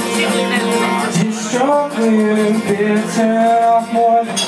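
Live acoustic guitar strummed with a man singing; a sung line glides up about a second in and settles into long held notes.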